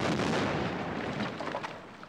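Cartoon dynamite explosion set off with a plunger detonator: a loud, rumbling blast that dies away over about two seconds.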